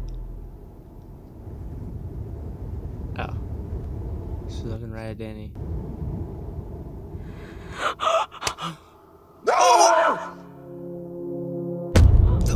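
Film soundtrack: a low, steady ambient noise with a few faint voices, a cluster of sharp clicks about eight seconds in, then a short, loud voice falling in pitch, followed by a low held tone.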